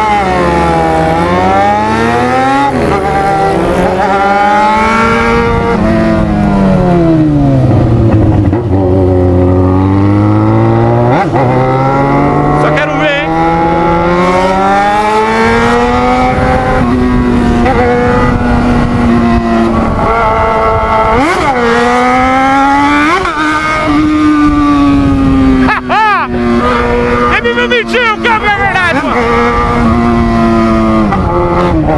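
Yamaha XJ6's four-cylinder engine heard from the rider's seat, revving up and down as it accelerates and is shifted through the gears. Its pitch climbs and drops several times.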